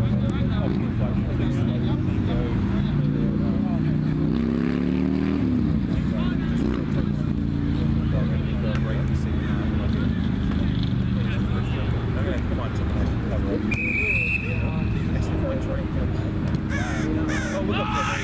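Steady hum of road traffic with engine drone, one passing vehicle's pitch rising and falling about four to six seconds in. A short high tone sounds about fourteen seconds in.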